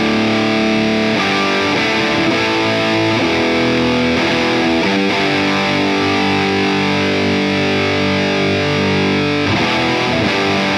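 High-gain distorted electric guitar played through a Diezel VH Micro amp head: held chords that change a few times.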